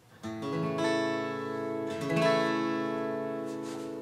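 Martin J-40 steel-string acoustic guitar strummed: a chord comes in about a quarter second in, with further strums just before one second and a little after two seconds, each left to ring out and slowly fade.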